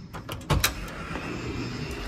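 Key-card electronic lock on a hotel room door being opened: a few small clicks, then a loud clack about half a second in as the lever handle is turned and the latch pulls back, followed by a steady hiss as the door swings open.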